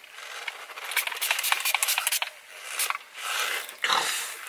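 Rustling and clicking handling noise close to the microphone, with a run of sharp clicks in the middle and a louder rustle at the end.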